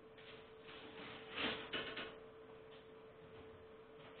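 A steady faint hum, with a short spell of rustling noise about a second and a half in.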